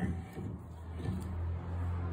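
A steady low hum runs throughout, with a faint rubbing of the French-polishing rubber on the wooden table edge.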